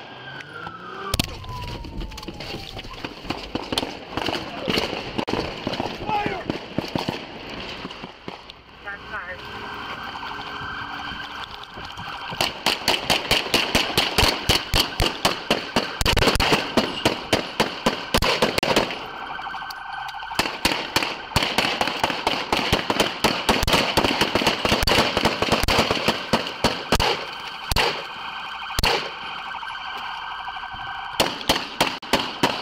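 Gunfire exchanged in a close-range police shootout: sharp shots in rapid strings of several a second, densest from about twelve seconds in, with a short lull around twenty seconds. A steady high electronic alarm tone runs underneath.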